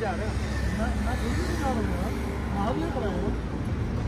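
Steady low rumble of passing road traffic, with men's voices talking at several points.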